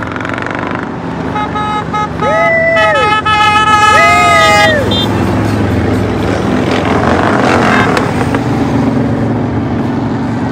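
A parade vehicle's horn honks in a few short taps and then a long held blast, with two rising-and-falling whoops from a spectator over it. Then a group of motorcycles goes by, their engine noise swelling past and peaking near the end.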